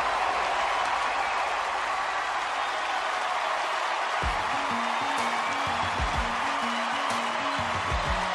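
A large theatre audience cheering and applauding in a standing ovation. About halfway through, a music cue with a steady beat and a repeating bass line comes in under the applause.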